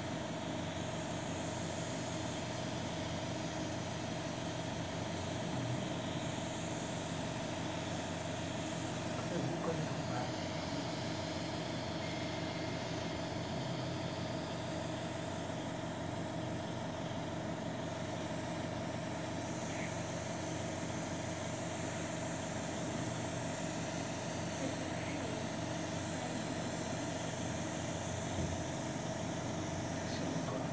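Steady machine hum in an endoscopy procedure room, with one constant mid-pitched tone over lower humming lines and no change in level.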